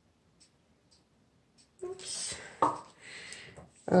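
Faint ticks about twice a second, then rustling and scraping handling noise as the painted canvas is picked up and moved on plastic sheeting. A woman starts speaking at the very end.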